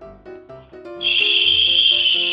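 Soft background music, then about a second in a loud, steady, high-pitched sound effect comes in over it and holds.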